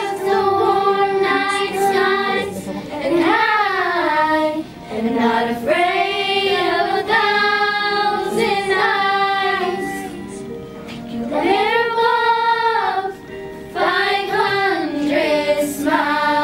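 A group of young girls singing a pop ballad together over a recorded backing track, in sung phrases of held notes with short breaks between them.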